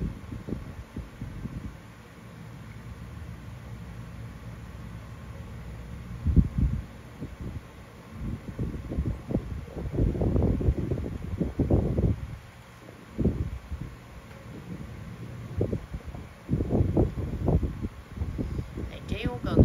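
Low rustling noise on the microphone with irregular muffled low bumps, in bunches of a second or two, while no one speaks and no music plays.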